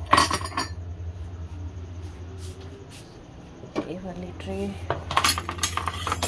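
Ceramic mugs knocking down onto a hard kitchen countertop, a few sharp clinks at the start, then a busier clatter of crockery about five seconds in.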